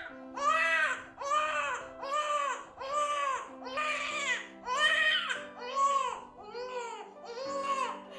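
An infant crying in a string of short wails, each rising and falling in pitch, about one a second, over a soft, steady music bed.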